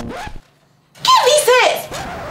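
A person's high voice calling out loudly, twice in quick succession with pitch rising and falling, after a brief near-silent gap about half a second in.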